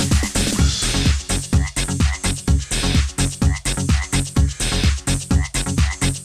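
Electronic dance music with a steady, fast beat of deep kick-drum thumps, downward-gliding bass notes and croaking, frog-like sounds woven into the rhythm.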